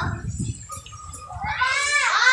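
A young child's high-pitched, drawn-out wavering cry begins about one and a half seconds in, after a low rumble.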